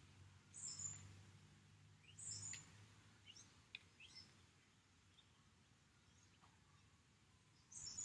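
Near silence with a few faint, high bird chirps in the first half, over a faint low hum.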